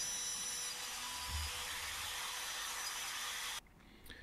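Makita compact trim router running as it cuts a recess into pine plaque wood: a steady high hiss with a faint whine. The sound cuts off suddenly shortly before the end.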